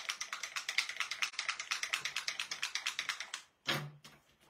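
A paint bottle being shaken: a fast, even rattle of about eight or nine clicks a second that stops a little before the end, followed by one short clack.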